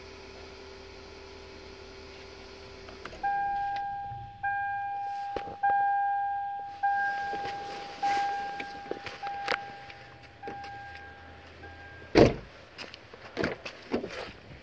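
An electric power-window motor runs steadily for about three seconds. Then the 2008 Toyota Camry Hybrid's warning chime dings eight times at an even pace, about 1.2 s apart, and a single loud thump comes near the end.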